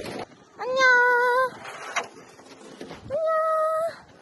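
A young woman's voice giving two long, drawn-out high notes, each under a second, the second pitched a little higher than the first.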